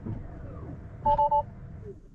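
Tesla in-car electronic chime: three quick beeps of a two-note tone about a second in, over a low cabin hum that drops away near the end as the car powers down.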